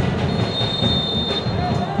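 Referee's whistle blown once for kickoff, a steady high-pitched blast lasting about a second, over the constant noise of the stadium crowd.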